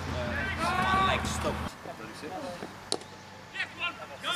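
A man talking for the first couple of seconds, then quieter outdoor background with a single sharp knock about three seconds in and faint voices near the end.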